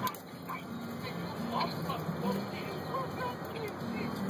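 Short, soft calls scattered through the moment from a family of Canada geese and their goslings, over a low background hum.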